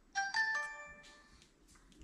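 DJI Osmo Action camera's power-on chime: a quick rising run of electronic tones ending in a ringing chord that fades within about a second.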